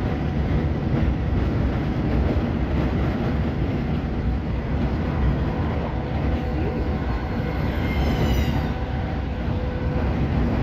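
Steady running noise of a Class 319 electric multiple unit at speed, heard from inside the carriage: the rumble of wheels on the rails and the body. A brief rising high whine comes near the end.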